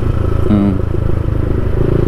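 Yamaha MT-15's single-cylinder engine running steadily as the motorcycle cruises along. A short vocal sound comes about half a second in.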